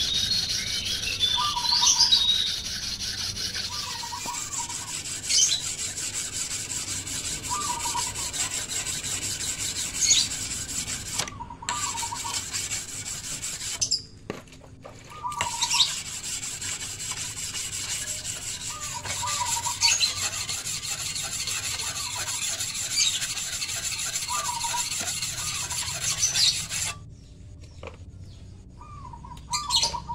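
Hand-held whetstone rubbed rapidly back and forth along the steel blade of an egrek, an oil palm harvesting sickle: a continuous rasping scrape that pauses briefly twice around the middle and stops a few seconds before the end.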